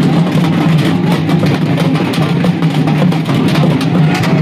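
A group of large frame drums beaten fast with sticks, a dense and steady rhythm of many strokes a second.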